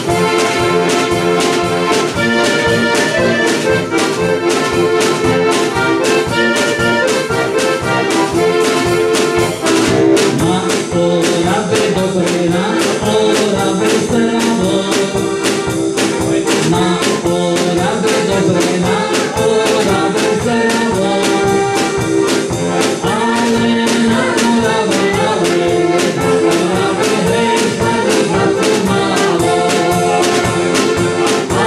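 Accordions playing a tune, with a drum kit keeping a steady beat.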